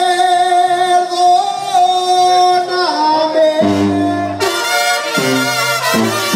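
Banda sinaloense playing live: a male singer holds one long note for about the first three seconds. Then the brass section comes in with short, rhythmic chords, trumpets over low trombone and bass notes.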